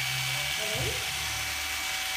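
Electric hair clippers running with a steady buzz while shaving the back of a boy's head.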